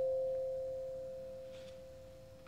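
Two tuning forks ringing in pure, single tones: a lower one struck just before, fading steadily, over a higher one dying away from an earlier strike.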